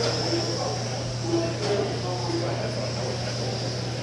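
Faint background voices over a steady low hum.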